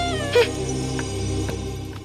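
Film background score: a steady music bed with a held, pitched cry that slides down and ends in a short squeak near the start. A few faint ticks follow, and the sound fades toward the end.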